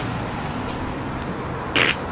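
Steady background hum of street traffic, with a short cough near the end.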